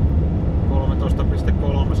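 Steady low drone of a Ford Transit van under way, engine and road noise heard from inside the cab, with a man's voice coming in about a second in.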